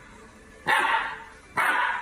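Husky puppy barking twice, two short barks about a second apart.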